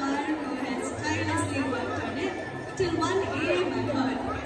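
Many voices chattering at once in a large hall, with no single speaker standing out.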